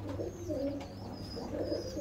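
Domestic pigeons cooing softly, a few low coos.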